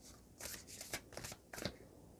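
A deck of oracle cards being shuffled by hand: faint, short papery rustles and flicks, several in a row.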